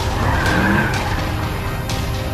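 Car tyres squealing on asphalt as a car speeds away, with a brief screech about half a second in, over a steady engine rumble and dark film-score music.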